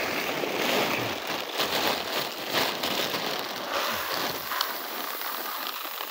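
Woven plastic sack rustling and crackling as it is gripped, pulled open and shaken by hand.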